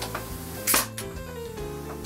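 Pneumatic nail gun firing once, about two-thirds of a second in: a sharp bang with a short hiss of air as a nail is driven into quarter-round trim. Background music plays throughout.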